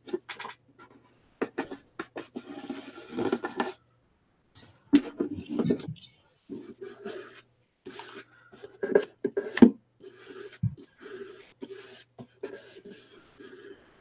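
Scattered clicks, taps and crackling from a small plastic mould packed with bath bomb mixture being handled and pressed, in short irregular bursts with brief silent gaps between them.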